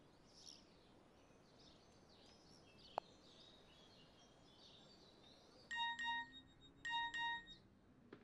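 Mobile phone alert tone: two double beeps about a second apart, over faint birdsong, with a single sharp click about three seconds in.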